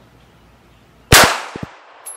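A single .380 pistol shot about a second in: one sharp crack with a short tail that dies away over about half a second.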